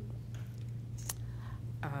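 A pause in speech filled by a steady low electrical hum through the lectern's sound system, with one faint sharp click about a second in. A voice starts an "um" near the end.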